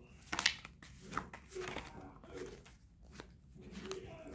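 Tarot deck being shuffled by hand: a series of short papery card slides and flicks, the loudest about half a second in, as cards are pulled from the deck.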